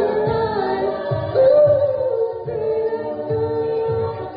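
All-female a cappella group singing live: a soloist's sustained lead line over held backing vocals, with vocal percussion thumping a steady beat about twice a second.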